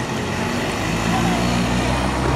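A vehicle engine running with a steady low hum that grows louder about a second in, over general outdoor noise.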